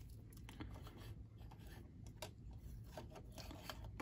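Faint rubbing and scattered light clicks of a baseball card being handled and set on a card display stand.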